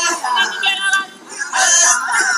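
Maasai men singing together in a group chant of the jumping dance, with a brief drop in loudness about halfway through.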